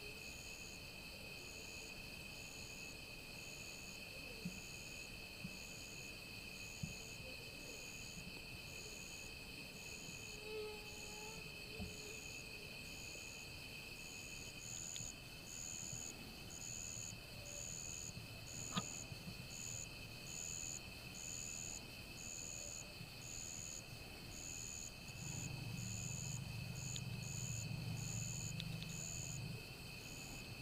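Night insects calling: a steady high-pitched chorus of trills, with one insect's call pulsing on and off about once a second. A few faint clicks and a low rumble come near the end.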